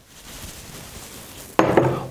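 Granulated sugar poured from a small bowl into a stainless steel saucepan: a steady, grainy rush for about a second and a half.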